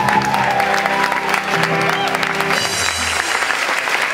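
A song's last held sung note and closing chord die away under audience applause, which carries on alone for the last second or so.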